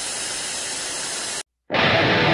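TV-static white-noise hiss of a logo intro effect, cutting off abruptly about one and a half seconds in. After a brief silence, music begins near the end.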